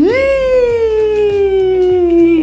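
A single long wailing call, loud and lasting about two and a half seconds, that jumps up in pitch at the start and then slides slowly down before cutting off. Quieter background music runs underneath.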